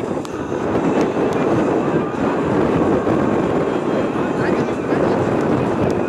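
Steady loud rushing noise over an outdoor football pitch, with occasional faint distant voices.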